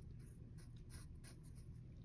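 Pencil writing on paper: a quick run of short, faint scratching strokes, over a steady low room hum.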